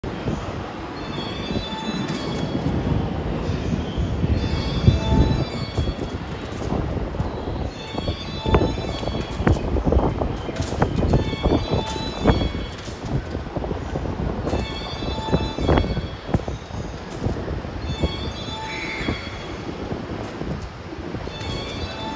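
Electric commuter train rolling slowly along the station tracks, its wheels knocking irregularly over rail joints and points, with some wheel squeal.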